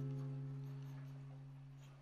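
Background music: a strummed guitar chord ringing out and slowly fading away.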